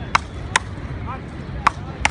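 Frescobol paddles striking the rubber ball in a rally: three sharp cracks, two close together near the start and one more late on.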